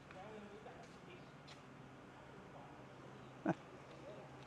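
Faint distant voices in the open air, with one short, sharp sound, much louder than the rest, about three and a half seconds in.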